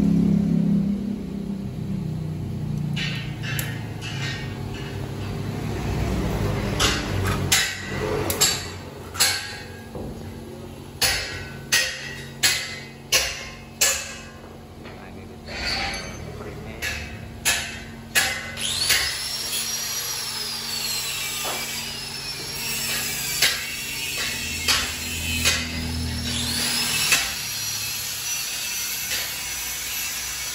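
A run of sharp metallic knocks and taps from hand work on a steel motorcycle frame, the knocks closest together and loudest in the middle stretch, scattered and lighter later on.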